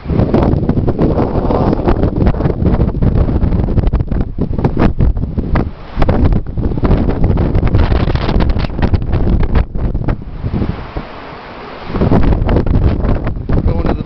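Wind buffeting the camera's microphone: a loud, low, rumbling roar with crackles, which drops away for a second or so about three-quarters of the way through and then picks up again.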